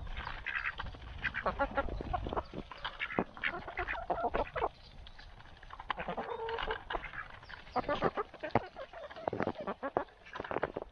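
Mixed flock of buff Orpington hens and ducks feeding at a grain feeder: many quick pecking clicks, with clucking and quacking in several short bouts.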